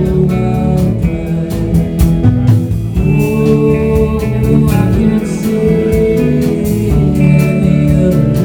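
Live rock band playing: electric guitars and keyboard over bass and a steady drum beat.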